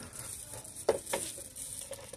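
Two light knocks about a second in, as a pedestal stand is set down on a glass shelf, over a steady hiss of store background noise.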